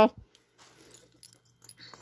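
A metal finger ring being worked off a finger that wears several other rings: faint rubbing and handling noise with a few small clicks, one just past the middle and a couple near the end.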